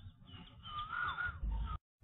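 A bird calling once, a clear call that rises and then drops away, over a low background rumble, with a few short chirps before it.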